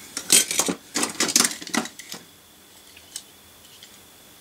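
Diecast metal toy cars clinking and clattering against each other as a hand rummages through a plastic box of them: a run of clinks over the first two seconds, then one more click about three seconds in.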